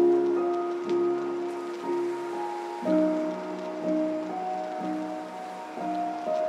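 Chillstep electronic music: slow sustained chords, re-struck about once a second and changing about three seconds in, over a soft steady hiss.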